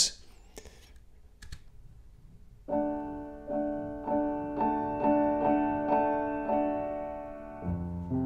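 Steinway grand piano, heard through a pair of Neumann KM 84 small-diaphragm condenser mics in ORTF stereo with no processing. The piano comes in after about two and a half seconds of near quiet, repeating the same chord about twice a second, with a new, louder chord near the end.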